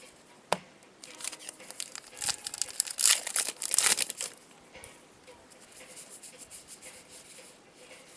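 A baseball card pack's wrapper being torn open, crinkling and ripping, loudest about three to four seconds in. This is followed by soft, rapid ticking as the freshly pulled cards are handled.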